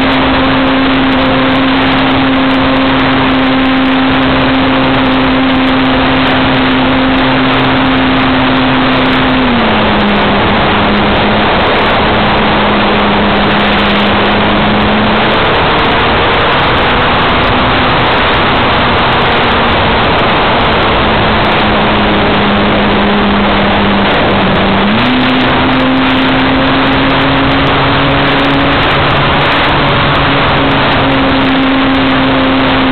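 Electric motor and propeller of a Parkzone P-51D Mustang RC plane in flight, heard from its onboard camera: a steady hum over heavy wind rush. The hum drops in pitch about ten seconds in as the throttle is eased back, and rises again about 25 seconds in as it is opened up.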